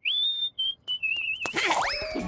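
Cartoon whistling: one whistled note sliding up and held for about half a second, a short note, then a wavering, warbling whistle. About a second and a half in, a quick swishing sound effect.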